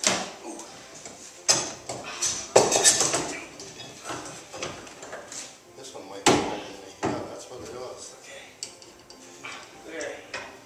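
Metal bar clamps clanking and knocking against wood as they are set and tightened to hold a steam-bent wooden rub rail against a boat hull: irregular sharp knocks and clatter, a few louder ones among smaller clicks.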